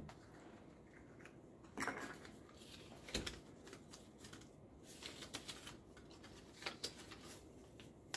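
A folded paper strip being unfolded by hand: faint rustling and crinkling of paper, with a few sharper crackles scattered through.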